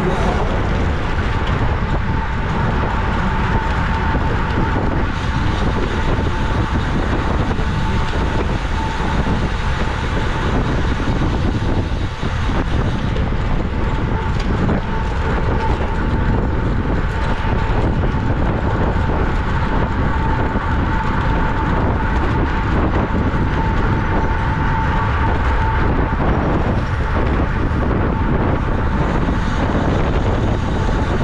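Wind rushing over a bike-mounted camera's microphone at racing speed, mixed with road-bike tyre noise on asphalt, with a thin steady tone over it.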